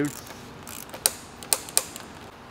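Torque wrench with an oil filter cap socket clicking as it tightens the oil filter housing cap to 25 Nm. There are a few sharp clicks, one about a second in and two close together near the end.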